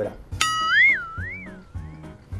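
A cartoon-style comedy sound effect: a bright, boing-like tone that comes in sharply about half a second in, wobbles up and down in pitch twice and fades away, marking a comic reaction. Background music plays under it.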